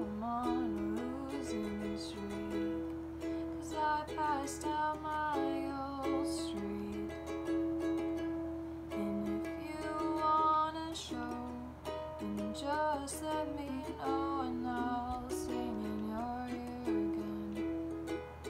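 A ukulele strummed in slow chords while a woman sings a soft melody over it in phrases.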